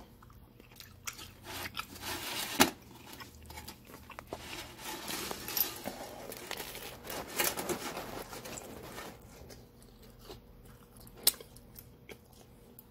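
Close-up biting and chewing of a crunchy, hot homemade pizza, with irregular crackling and handling clicks; one sharp knock about two and a half seconds in is the loudest sound.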